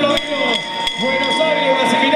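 A man's voice, drawn out and sliding in pitch like folk singing, with a brief dip about half a second in and two short clicks.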